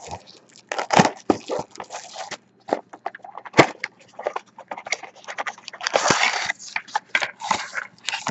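Plastic shrink-wrap crinkling and tearing as it is stripped from a cardboard trading card box, then cardboard scraping and clicking as the box flap is opened and the inner pack pulled out. The sound is a run of short crackles and clicks, with a longer crinkling stretch about six seconds in.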